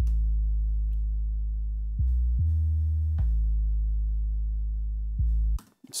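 A soloed 808 bass line from a hip-hop beat: long, deep, sustained bass notes, each held about two seconds, with short notes in between as the pitch changes. It stops just before the end.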